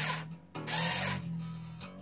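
A battery-powered string winder turns a guitar tuning peg in two short runs, stopping briefly about half a second in. The new steel string rasps over the nut and around the post as it winds on and starts to take up tension.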